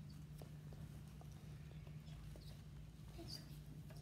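Quiet room tone: a steady low hum with a few faint, light taps scattered through.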